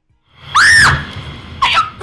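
A woman's sharp, high-pitched scream of pain, rising and falling in pitch, followed by shorter cries near the end, as her hand is squeezed too hard in a handshake.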